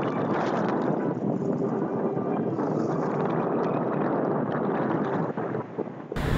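Steady rush of wind on the microphone mixed with breaking surf on the beach.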